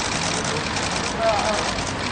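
Crowd chatter: many voices calling out and talking at once in short fragments over a steady background din.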